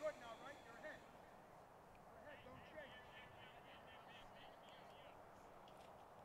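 Near silence over the ballfield, with faint distant voices calling near the start and again from about two seconds in.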